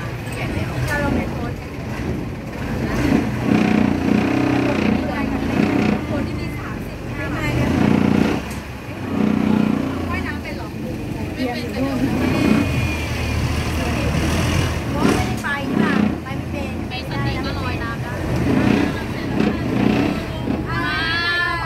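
Long-tail boat's engine running steadily under people talking close by.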